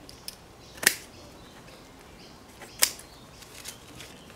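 Hand pruning secateurs snipping through cycad roots: two sharp snips, about a second in and near three seconds, with a couple of fainter clicks of the blades.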